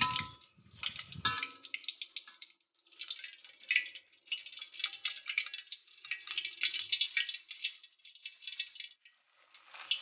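Hot cooking oil in a wok crackling and spitting as oil drips from fried eggplant draining in a wire spider strainer. The crackle comes in irregular bursts with short lulls.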